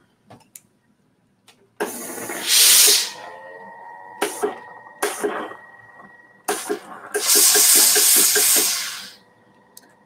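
Steam iron releasing steam over fabric on an ironing board. A loud hiss of steam comes about two seconds in, then softer hissing with a faint steady tone and a few clicks, then a second, longer burst of steam from about seven to nine seconds.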